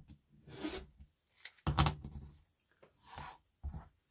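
Rotary cutter drawn through layered cotton fabric strips on a cutting mat, trimming off their folded ends: four short cutting strokes, the loudest about two seconds in.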